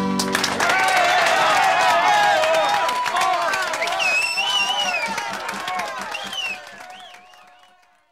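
A crowd applauding and cheering with shouts at the close of a live pub-style folk song, fading out near the end.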